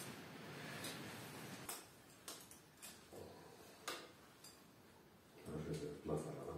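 Faint, scattered clicks and ticks of bonsai wire being handled as a pine branch is wired to the trunk, with a short muffled sound near the end.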